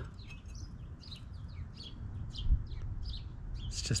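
Small birds chirping in short repeated notes over a low steady rumble, with one soft thump about two and a half seconds in.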